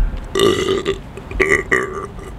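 A man burping: one drawn-out burp of about half a second, then two shorter ones.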